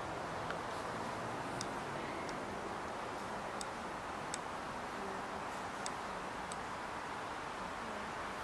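Steady background hiss of an outdoor night recording, with about half a dozen faint, sharp little ticks scattered through it.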